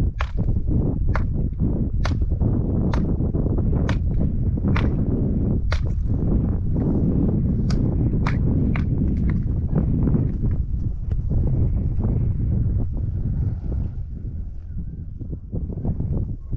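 Sharp knocks about once a second of a mason's tool striking cut stone blocks as they are set in a wall. The knocks thin out and grow fainter after about nine seconds, over a steady low rumble.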